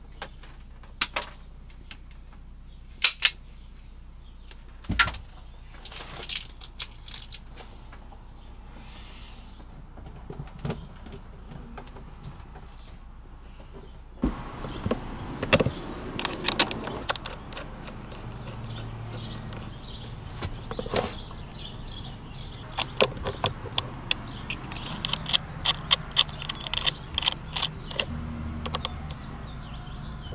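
Scattered sharp clicks of wire and fitting handling, then, after a jump to a louder steady outdoor background about halfway through, a run of metallic clicks and clinks as a wrench tightens a cable lug onto a 12-volt battery terminal.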